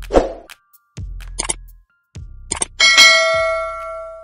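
Subscribe-button animation sound effects: a whoosh at the start, a couple of sharp clicks, then a bell-like ding about three seconds in that rings on and fades, over a few low bass thumps.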